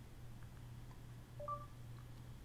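Google voice search's short two-note chime from a Nexus S 4G's speaker, a low tone followed at once by a higher one, signalling that it has started listening for a spoken question. A faint steady hum runs underneath.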